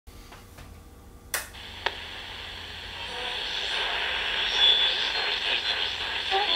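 Two sharp clicks, then a rushing noise that builds over a couple of seconds and holds, as an intro sound effect.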